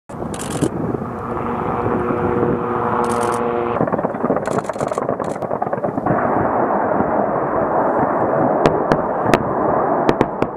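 Bell AH-1Z Viper attack helicopter running and firing on ground targets: a dense run of weapons fire and impacts over the helicopter's engine noise, with several sharp cracks near the end.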